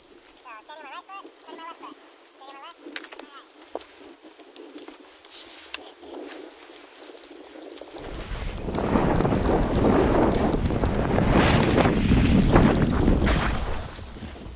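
Wind buffeting a skier's camera microphone, with the hiss of skis running over snow, loud from about eight seconds in as the skier heads downhill. Before that it is fairly quiet apart from a faint distant voice.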